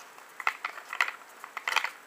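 Hard plastic Mighty Beanz capsules clicking against a plastic tray as fingers handle them: a few sharp clicks, with a quick cluster near the end.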